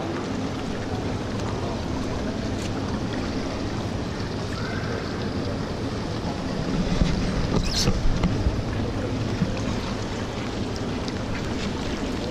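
Indoor swimming pool ambience: a steady wash of water noise and reverberant hall sound, with a brief louder disturbance, including one sharp sound, around seven to eight seconds in.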